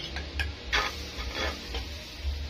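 Several light clicks and taps at irregular intervals, over an intermittent low rumble.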